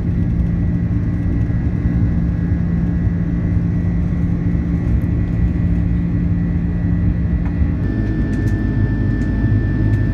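Airbus A330-300 cabin noise during the climb after takeoff: the jet engines run at climb power, a loud steady rush with low humming tones. About eight seconds in, the hum changes abruptly.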